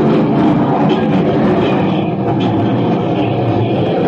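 Live noise music: a loud, steady wall of distorted electronic noise from a mixer and a rack of electronics and tape gear.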